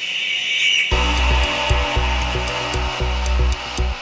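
Arabic house music: a held high synth tone without bass, then the kick drum and bass drop back in about a second in, carrying on as a steady beat with ticking hi-hats.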